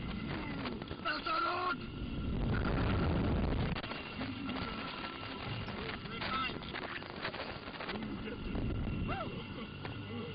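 Riders in a thrill-ride capsule letting out short yelps and whoops, about a second in, around six seconds and again around nine, over wind rushing and buffeting the onboard microphone as the capsule moves; the wind noise swells loudest about two to four seconds in.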